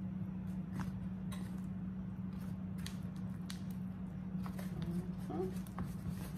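Raw fish fillets being rolled and pressed in a flour coating by hand: soft squishing and light scattered taps, over a steady low hum.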